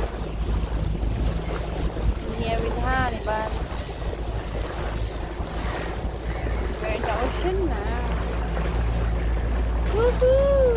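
Honda outboard motor running steadily as the boat motors along, with wind buffeting the microphone and water rushing past. A voice comes in briefly twice, about three seconds in and again near the seventh second.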